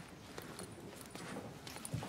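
Faint footsteps on a hard tiled floor: a few light, irregular taps.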